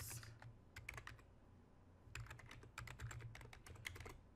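Faint computer keyboard typing: keys clicking in short runs, a few about a second in, then a longer run from about two seconds on.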